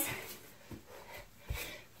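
A few soft thumps of hands and feet landing on a carpeted floor during a burpee, the loudest about one and a half seconds in, with breathing between.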